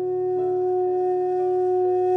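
A flute holds one long, steady note over a low sustained drone, in a Hindustani classical rendering of raga Bhoopali.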